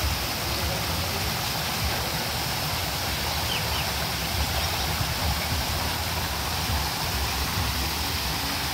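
Water from an artificial rock waterfall, falling in thin streams and splashing, a steady rush of water with an uneven low rumble underneath.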